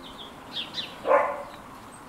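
Birds chirping in short, high, downward-sliding notes, with one louder, lower call about a second in.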